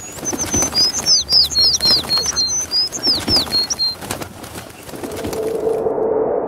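Cartoon outro sound effects: a rapid run of bird chirps and tweets over light clicks and flutters for about four seconds, then a swelling whoosh near the end as the animation sweeps to the next card.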